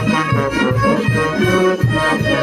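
Live festival band music from saxophones, brass and drums, playing dance music with a steady beat.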